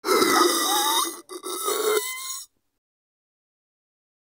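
A person's strained grunting while holding their breath, a noisy tight-throated sound with a wavering whine in it. It breaks briefly about a second in, resumes, and cuts off sharply about two and a half seconds in.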